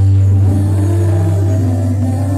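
Live praise-and-worship music: a group of singers and a band performing a Cebuano worship song, over a deep held bass note.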